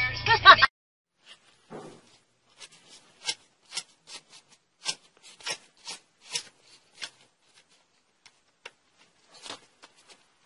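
Car sound system music cuts off abruptly less than a second in, followed by irregular sharp crackles and pops from the audio system, a fault traced to water that had collected inside the car door.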